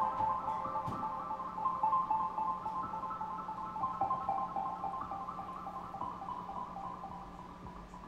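Live electronic music from synthesizers: a fast, repeating pattern of short pitched notes over a steady low hum, fading out over the last few seconds.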